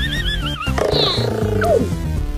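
Cartoon soundtrack music with a wavering, warbling high tone, then about a second in a short burst of cartoon sound effect that ends in a quick falling glide.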